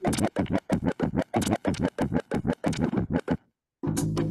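Vinyl record scratching on a DJ turntable: a quick, even run of back-and-forth strokes, several a second. The strokes stop a little over three seconds in, and another piece of music starts right at the end.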